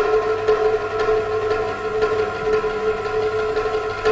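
Chinese drum tapped lightly and quickly with thin sticks, many soft taps under a steady held note with overtones.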